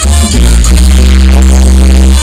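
Loud live Latin dance band playing, with a long low bass note held through most of the stretch.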